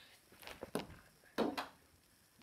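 A quiet room with a few short, soft thumps, the loudest about one and a half seconds in.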